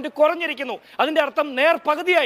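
Speech only: a man talking fast and emphatically in Malayalam.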